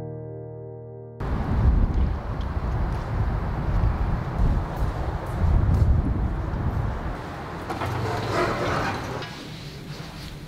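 Soft piano music fading out, cut off about a second in by loud outdoor noise. The noise is dominated by a gusting low rumble, typical of wind buffeting a handheld camera's microphone.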